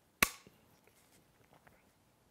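A single sharp snap about a quarter second in, followed by a few faint small ticks from handling materials at the fly-tying bench.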